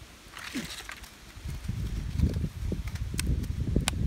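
Dry, brittle shed London plane bark and dead leaves rustling and crackling as pieces are picked up off the ground, with a couple of sharp crackles near the end. Low rumbling handling noise on the phone's microphone runs under it from the middle on.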